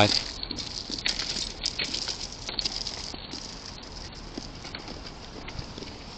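Rustling and small irregular knocks close to a body-worn camera's microphone, from the placard and its wooden stick being handled against it, over a steady hiss of street noise.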